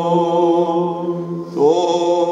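A man chanting a Greek Orthodox liturgical reading, held on one steady note; about one and a half seconds in he breaks off and begins a new phrase with a short rise in pitch.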